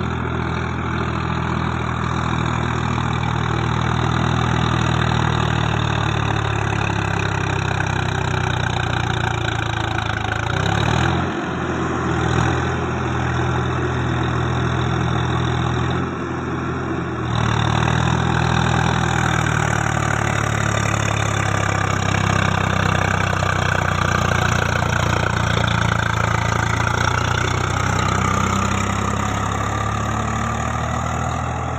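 Swaraj 744 FE 4x4 tractor's three-cylinder diesel engine running steadily under load, driving a rotavator through wet paddy mud. Its note dips and wavers briefly about a third of the way through, then picks up again.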